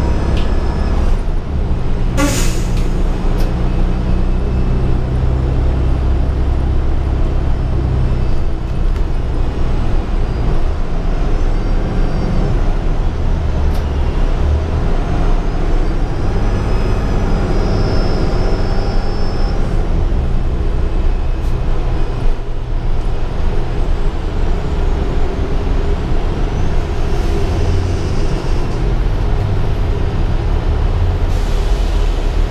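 Interior ride noise of a moving 2015 Gillig Advantage transit bus: a steady low engine and drivetrain drone with road noise and rattles. A sharp clatter comes about two seconds in, and a faint high whine rises and falls in the middle.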